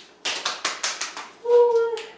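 Gorilla tape being pulled off the roll in a quick run of crackling rips, then a voice calling out briefly near the end.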